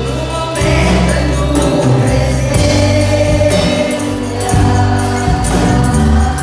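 Live gospel worship music: a group of singers with microphones, sung over keyboard and band accompaniment with a steady beat.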